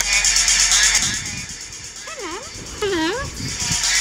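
Upbeat dance-pop song thinning into a break, with two swooping vocal glides, down then back up, about two and three seconds in, before the full beat comes back near the end.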